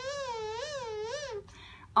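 Beatbox mouth kazoo: a buzzy hummed tone made with the bottom lip vibrating against the teeth. Its pitch wavers up and down about three times, then it stops a little past halfway through.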